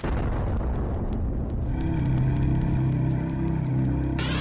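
Cinematic logo-intro music: a deep boom and rumble opens it, and about two seconds in a low sustained chord takes over, with faint ticking high above it.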